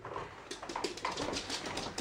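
Soft, irregular clicking and shuffling of a small dog's claws on a tiled floor as the puppy moves about.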